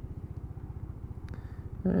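Lexmoto Diablo 125cc scooter's single-cylinder engine idling steadily at a standstill, a low, even pulsing.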